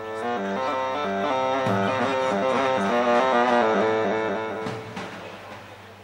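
Live wedding-party music: one instrument plays a quick melodic run of single notes stepping up and down over a steady low hum. It grows louder toward the middle and fades out about five seconds in.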